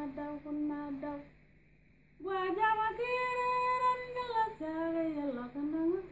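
A woman singing solo and unaccompanied, in long held notes. She breaks off for about a second near the start, then comes back in on a higher note that she holds before sliding back down.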